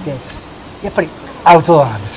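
Insects chirring in a steady, high-pitched chorus, unbroken behind the voices.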